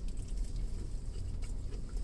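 A man chewing a mouthful of carne asada taco, with faint soft mouth clicks over a low steady hum.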